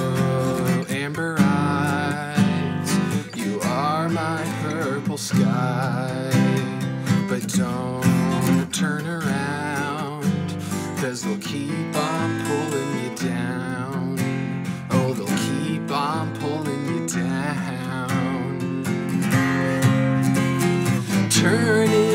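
Steel-string acoustic guitar strummed in a steady song accompaniment, with a man's voice singing over it.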